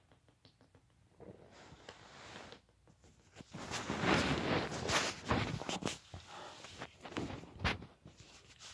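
Drinking from a plastic bottle of sparkling water close to the microphone: scattered clicks, then rustling, crinkling and cracking handling noise, louder from about halfway through.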